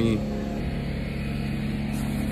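A motor running steadily with a low, even hum.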